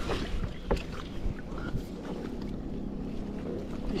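Wind buffeting the microphone and water against a kayak hull, with a few light knocks in the first two seconds.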